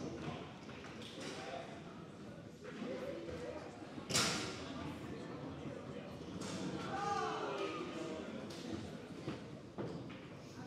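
Foosball play: the ball and the rod-mounted players knock and click on the table, with one sharp, loud strike about four seconds in. The hall echoes behind it.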